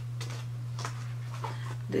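Several short crinkles and taps from a cardboard wig box being handled, over a steady low hum.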